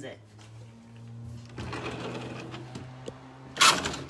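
Handling noise as something is moved about: rustling over a steady low hum, then a short, loud scrape or knock near the end.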